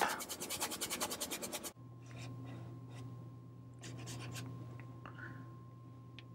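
Oil-paint brush scrubbing quickly back and forth on canvas, about a dozen short strokes a second. It stops abruptly before two seconds in, leaving only faint scattered brush touches over a low steady hum.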